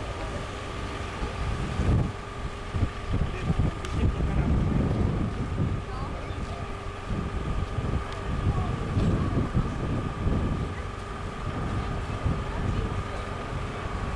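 Wind buffeting a handheld camcorder's microphone, an uneven low rumble that rises and falls in gusts, over a faint steady high whine.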